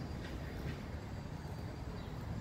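Outdoor city background noise: a steady low rumble with no distinct events.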